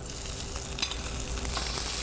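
Butter sizzling as it browns in a sauté pan over a gas burner, with scattered small crackles; the sizzle grows a little louder toward the end.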